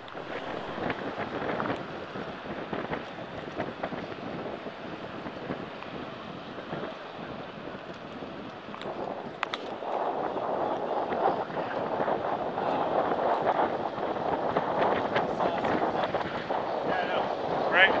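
Wind rushing over the microphone and road noise while riding a bicycle, with scattered faint clicks. Voices of other riders and passers-by murmur underneath, growing denser in the second half.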